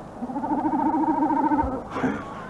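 A single held electronic musical tone with a fast, even wobble, lasting about a second and a half.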